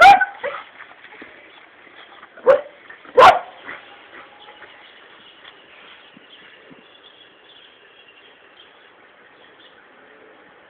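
A dog barking: short, sharp barks in the first few seconds, the last two under a second apart, then it goes quiet with only faint background hiss.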